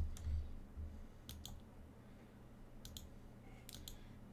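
Sharp clicks of computer input at a desk: one at the start with a dull low thud, then three quick pairs of clicks spaced about a second apart.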